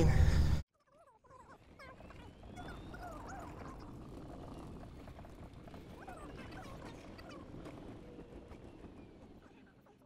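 Faint bird calls: short chirps and pitch glides over a quiet outdoor background.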